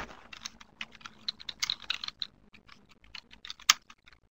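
Typing on a computer keyboard: a quick, uneven run of key clicks, with one louder click near the end.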